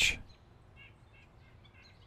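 Quiet room tone with a few faint, short bird chirps around the middle.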